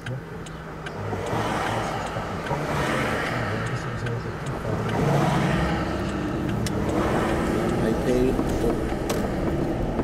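Car interior noise while driving: engine and tyre/road noise heard from inside the cabin. It grows louder about a second in and stays steady.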